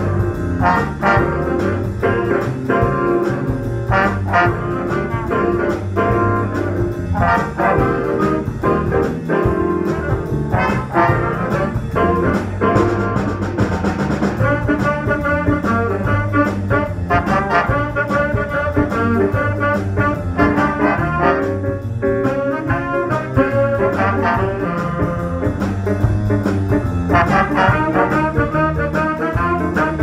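Student jazz big band playing a swing chart at sight: saxophone section and brass horns over a drum kit, continuous and loud with regular drum hits.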